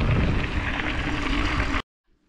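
Wind buffeting a bike-mounted or body-worn camera microphone, mixed with the rumble of mountain bike tyres rolling on a dirt road. The noise cuts off abruptly near the end.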